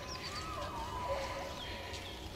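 A pack of foxhounds in cry: several hounds giving tongue together in overlapping wavering howls, which means they have picked up a scent.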